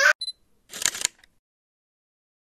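A child's high voice cut off abruptly, a faint short beep, then a brief camera-shutter-like click sound effect about a second in, added in the edit over a title-card transition.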